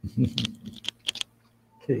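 Computer keyboard keys tapped about six times over a second, sharp separate clicks, with short bits of voice just before and after them.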